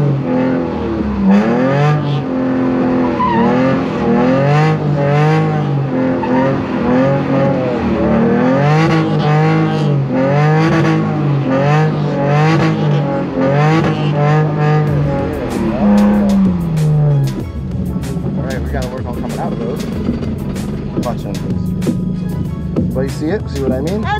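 BMW E46 M3 engine revving up and down over and over, about once a second, with tyres squealing as the car is spun in donuts. Near the end the revving settles into a rougher, steadier run.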